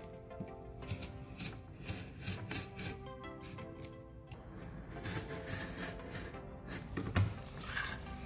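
Utility knife blade drawn in repeated short strokes through thick corrugated cardboard along a steel ruler, with soft background music.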